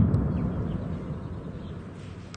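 Low rumble of an artillery shell explosion rolling out and slowly fading after a sharp blast just before.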